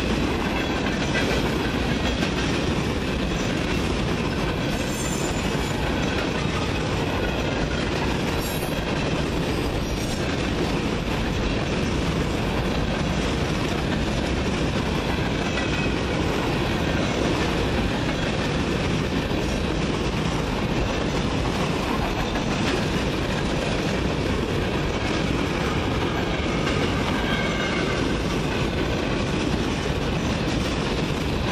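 Freight train cars rolling past, their wheels on the rails making a steady, unbroken noise.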